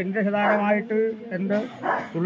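The Kurathiyamma theyyam's voice speaking in Malayalam in a drawn-out, sing-song manner, the pitch held fairly level through long phrases.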